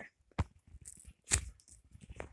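Two sharp cracks about a second apart, with faint rustling between, as plush toys are handled and shifted about.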